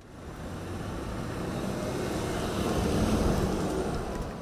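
A black Mercedes limousine pulling away and driving past: steady tyre and engine noise that swells to its loudest about three seconds in, then begins to fade.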